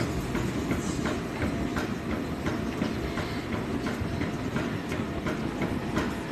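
Stair-climber machine running, its revolving steps clattering in a steady rhythm of about three clicks a second over a low rumble.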